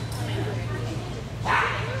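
A dog gives one short bark about one and a half seconds in, over a steady low hum and faint voices.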